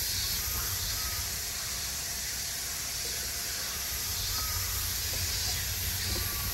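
Steady outdoor background hiss with a low rumble underneath, and no clear event standing out.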